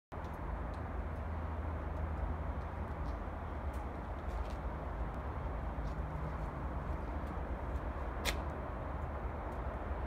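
Tractor unit's diesel engine idling, a steady low rumble, with one sharp click about eight seconds in.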